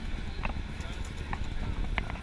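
Busy city street ambience in a crowded pedestrian plaza: a steady low traffic and wind rumble with people's voices, broken by a few short, sharp clicks.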